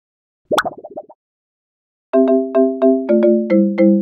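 Intro music jingle for a title card: a short pop-like flourish, a pause, then a quick tune of about eight struck notes stepping down in pitch, the last note ringing out.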